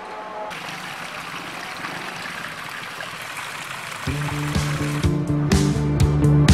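Background music: a soft hissing swell, then a band comes in about four seconds in with sustained bass notes and a steady beat of about two a second, getting louder.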